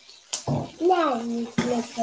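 Garlic scapes sizzling in hot oil in an electric skillet as oyster sauce is poured over them and stirred; the hissing sizzle thickens about a second and a half in. A voice speaks over it.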